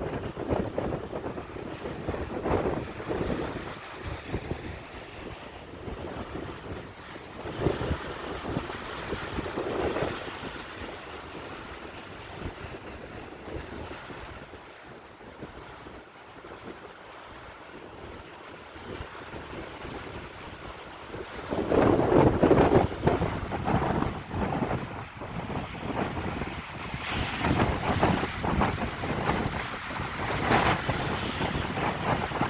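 Gusty wind blowing across the microphone, surging and easing irregularly, with the loudest gust about three-quarters of the way through. It is very windy.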